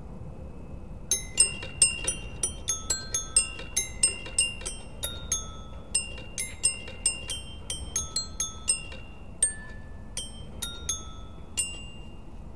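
Background music: a melody of high, short, ringing notes that fade quickly, starting about a second in, over a steady low background rumble.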